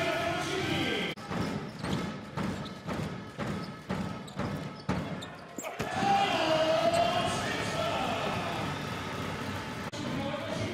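A basketball being dribbled on an indoor court, sharp bounces about twice a second for several seconds in the middle, between stretches of crowd voices from the stands at the start and after an abrupt cut near the end.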